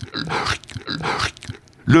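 A man's voice in short, breathy, stammering bursts, about three a second, with no clear words, breaking off briefly before speech starts again near the end.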